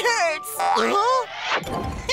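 A cartoon character's short whimpering whine, then a springy cartoon boing effect with a quick rising pitch glide. A low rumble follows near the end as the scene changes, all over light background music.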